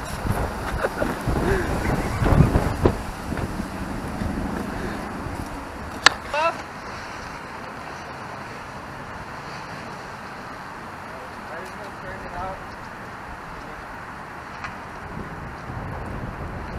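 Steady outdoor rush of wind and distant traffic. In the first few seconds there are thumps and rustling, and about six seconds in comes a single sharp click with a brief voice.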